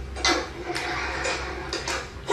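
Close-miked chewing and crunching of fried skewered food, a run of crackly, irregular crunches.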